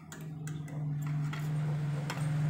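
Metal fork and spoon clicking and scraping against a ceramic plate as rice is gathered up, a few light ticks over a steady low hum.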